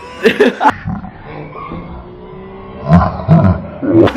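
A man laughing briefly, then two short, loud, gruff vocal bursts from a man about three seconds in, close to a growl.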